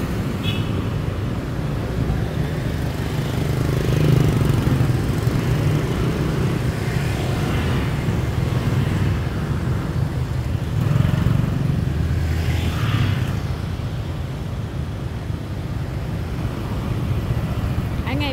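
Road traffic of motorbikes and cars: a steady low engine rumble that swells twice as vehicles pass close by, about four seconds in and again around eleven to thirteen seconds.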